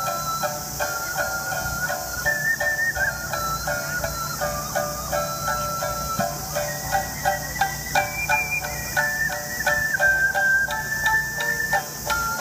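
Ocarina playing a melody of held notes over a shamisen plucking a steady, evenly spaced accompaniment, in a traditional Japanese children's song (warabe-uta).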